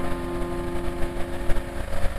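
A motor running steadily with a rough, even hum.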